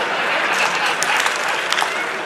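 Audience applauding steadily in a hall, a dense patter of hand claps with a few sharper individual claps standing out.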